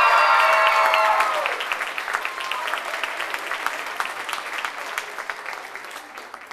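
Theatre audience applauding a curtain call, with a burst of high-pitched cheering voices in the first second or so. The clapping goes on after the cheers stop and slowly dies down toward the end.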